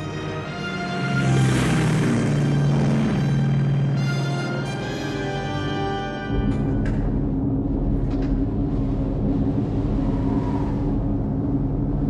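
Film score music with held, swelling tones; about six seconds in it gives way abruptly to the steady low drone of a B-29 bomber's piston engines heard from inside the aircraft.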